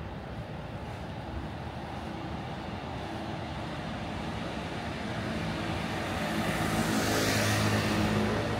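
A car approaching along the street and passing close by, growing steadily louder to its loudest about seven seconds in, with tyre hiss and engine hum over the background traffic.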